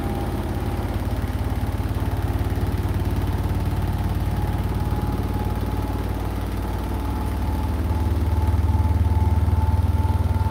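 Hotpoint NSWR843C front-loading washing machine running mid-cycle: a steady low hum with a faint whine that rises slightly in pitch, growing louder over the last couple of seconds.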